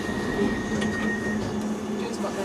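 London Underground train running, heard from inside the carriage: a steady rumble and rattle, with a thin high whine that stops about one and a half seconds in.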